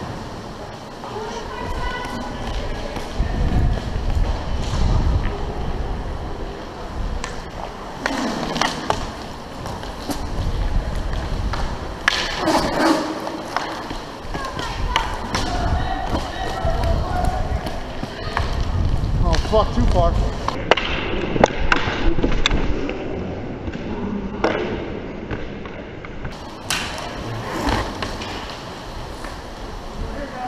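Inline skate wheels rolling and striding on a rink floor with a low, uneven rumble. Sharp clacks and knocks from hockey sticks and the puck, some against the boards.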